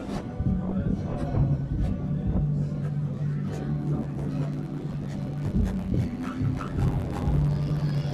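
Experimental sound collage: low droning tones held for a second or so at a time, with scattered clicks and crackles and faint, indistinct voices.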